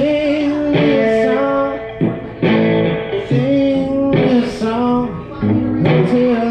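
Live electric guitar played through a small amp in a blues-rock style, with a man singing long held notes over the chords.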